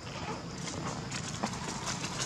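Dry leaf litter crackling and rustling under a macaque's feet as it walks over the ground, a run of short crackles beginning about half a second in.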